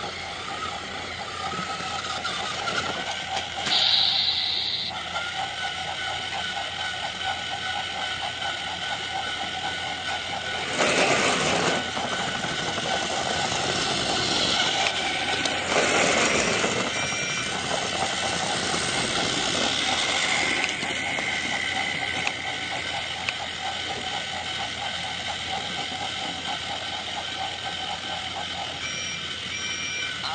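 A small motor running with a steady whine, with louder rushing surges about 4, 11 and 16 seconds in.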